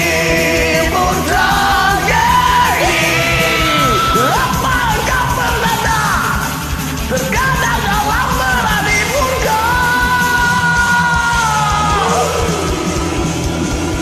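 Loud, yelled male singing of a power-metal song over a karaoke backing track, with a long held note about ten seconds in.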